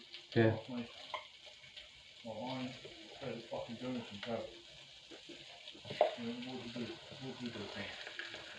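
Kipper fish fillets sizzling as they cook, a steady frying hiss.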